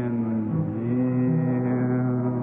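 Congregation singing a slow hymn, holding long sustained notes, on a muffled old recording with no treble.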